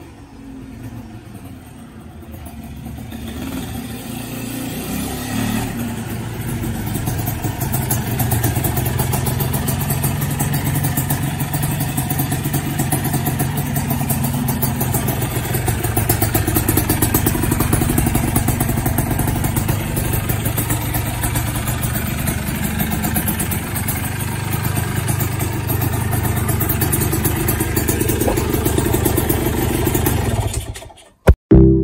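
Suzuki Satria two-stroke motorcycle engine running. It grows louder over the first several seconds, then runs steadily with a fast, even pulse.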